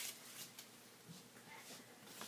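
Faint rustle of a cut strip of paper being handled and laid on a plastic cutting mat, dying away to near silence.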